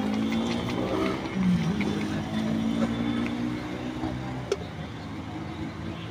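A motor vehicle's engine running close by, its pitch dipping and rising, then dying away about four and a half seconds in, where there is one sharp knock.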